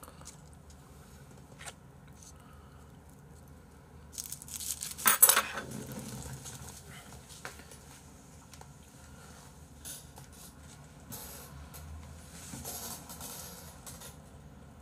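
Chopsticks and tableware clicking and clattering on a table of plated food, with one short loud clatter about five seconds in and softer rustling handling noise near the end.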